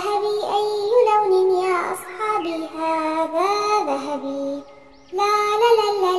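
A child's singing voice over music: a children's song, with a short break a little over four and a half seconds in before the singing starts again.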